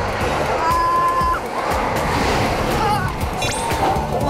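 Riders shouting and screaming on a fast amusement-park boat ride, over background music.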